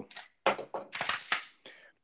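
Glock 19 Gen 5 pistol being worked in the hands close to the microphone: a short run of sharp metallic clicks and scraping from its action, from about half a second to a second and a half in, strongest in the middle.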